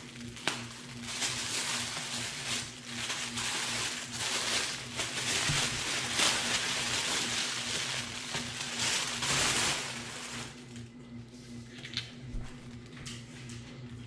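Tissue paper and plastic bubble wrap crinkling and rustling as a wrapped makeup palette is unwrapped by hand, with dense crackling for about ten seconds that then thins to a few scattered crackles.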